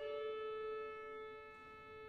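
Pipe organ improvising, holding a sustained chord; an upper note drops out early and the chord softens about a second in.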